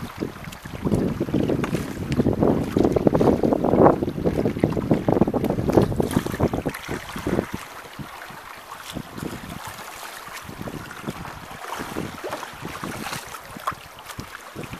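Wind buffeting the microphone with a loud low rumble for the first half. It then eases, leaving water splashing and slapping against the hull of a small sailboat running through choppy water.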